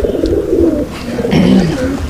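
Domestic Sialkoti pigeons cooing in the loft, with low, rolling coos near the start and again about a second and a half in.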